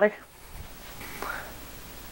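A short pause in a man's speech, filled with quiet room hiss and a faint breathy vocal sound about a second in.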